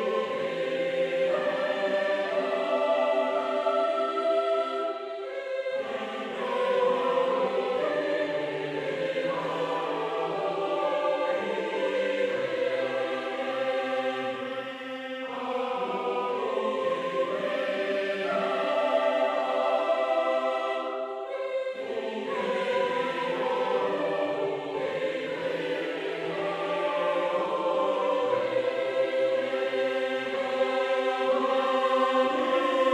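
A sampled virtual choir (EastWest Hollywood Choirs plugin) sings a slow choral anthem with words in sustained chords. The phrases break off briefly about six, fifteen and twenty-two seconds in.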